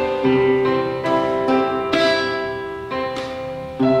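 Acoustic guitar and electronic keyboard playing an instrumental duet: plucked guitar notes ring over sustained keyboard notes, with a fresh loud chord struck near the end.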